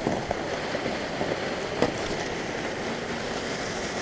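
Water of a partly frozen waterfall rushing steadily under the ice, with one short click just before halfway.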